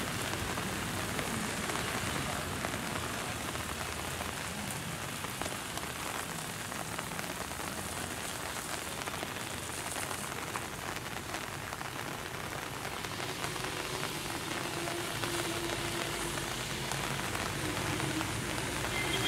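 Steady rain falling on a wet road and roadside foliage, an even hiss throughout. A faint engine hum joins in a little after the middle.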